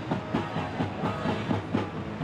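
Live funk blues-rock band playing, with the drums driving a steady beat of about four hits a second.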